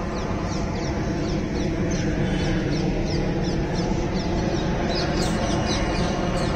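A large flock of birds calling over one another, many short calls at once in a continuous din, growing louder about five seconds in.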